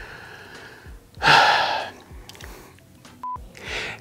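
A man breathing between takes: a loud breath about a second in, and a quicker breath taken just before he speaks again. A short, high beep sounds a little after three seconds.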